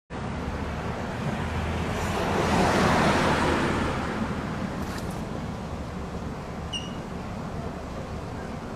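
Street traffic: a road vehicle passes close by, its noise swelling to a peak about three seconds in and then fading. A short high chirp sounds near the end.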